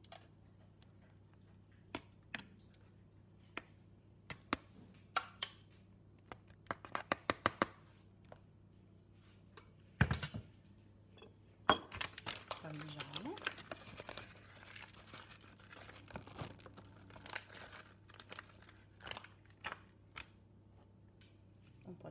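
Metal spoon clinking and scraping against a metal pot while béchamel is spread into an aluminium foil tray, with a quick run of taps partway through and one loud knock about ten seconds in. A long stretch of crinkling follows.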